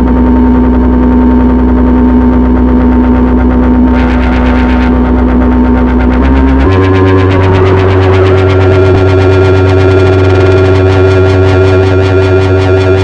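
ElectroComp EML 101 analog synthesizer sounding a loud, buzzy sustained tone that is reshaped as its panel knobs are turned. There is a brief hiss about four seconds in, the pitch steps up a little after six seconds, and a fast pulsing grows in the upper range near the end.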